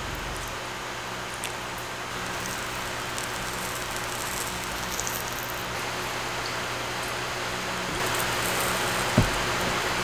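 Steady background hiss with a faint low hum, growing slightly louder about eight seconds in, and a single soft tap near the end.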